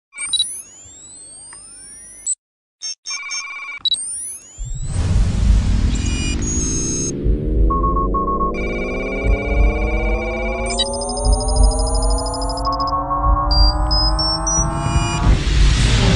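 Electronic logo-intro music and sound effects: beeping, chirping sweeps in the first few seconds, then a long rising swell of stacked tones over a deep rumble from about five seconds in, ending in a bright crash near the end.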